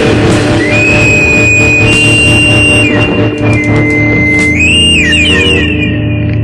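Lo-fi garage-punk recording: distorted electric guitar ringing out a held, droning chord, with a high whistling tone sustained above it that wavers and bends near the end.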